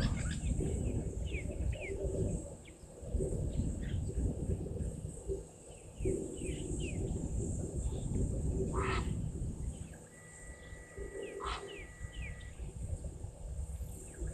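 Wild birds calling in the bush: many short falling chirps, with two louder calls about nine and eleven and a half seconds in and a thin steady whistle near the end. A steady high insect drone and an uneven low rumble run beneath.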